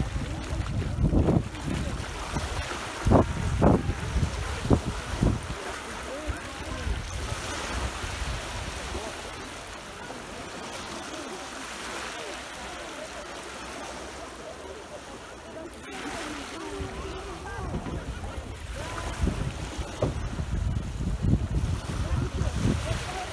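Small sea waves breaking and washing up the shore, with wind buffeting the microphone in gusts that are loudest in the first few seconds and again near the end.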